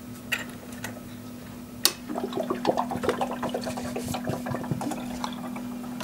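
Single-serve coffee maker brewing: a sharp click about two seconds in, then a steady hum while water trickles and gurgles into the cup.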